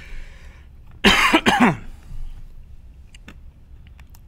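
A man coughs twice in quick succession about a second in, loud and harsh, on a bite of crunchy pretzel-filled candy, after a short breathy hiss at the start.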